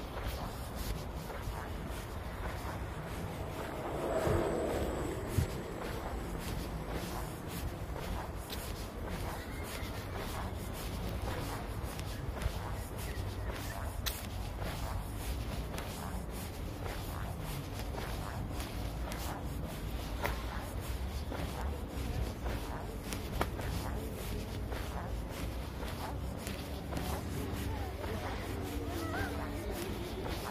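Footsteps of a person walking at an easy pace in sneakers on an asphalt path, a steady run of soft steps over a low background rumble. A brief louder sound comes about four seconds in.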